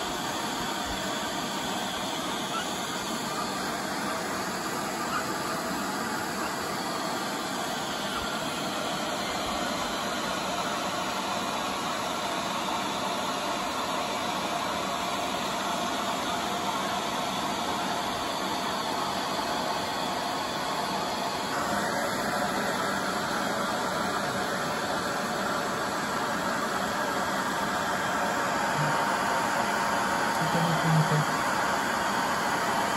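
Hair dryer blowing steadily, drying a wet guinea pig's coat; its tone shifts a little about two-thirds of the way through.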